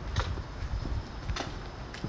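Footsteps on a concrete walkway, with two sharper scuffs standing out over a low rumble on the microphone.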